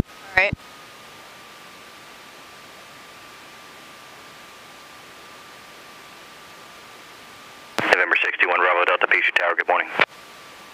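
Aircraft headset intercom audio: a steady hiss with a faint high whine, then speech over the radio for the last couple of seconds.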